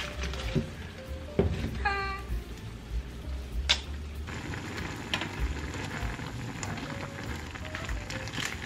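Water at a rolling boil in a steel pot, bubbling steadily as dried instant noodle blocks are dropped in and cook, with a couple of sharp knocks along the way.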